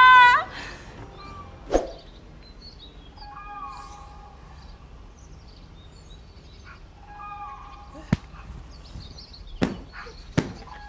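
Birds chirping outside a window, with one bird's call repeated twice a few seconds apart, in the early morning. A few sharp taps come in between, and a woman's sung note dies away just after the start.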